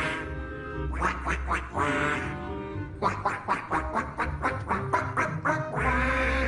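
A children's TV show's song of cartoon duck quacks, in quick rhythmic runs over a bright music track with a steady bass.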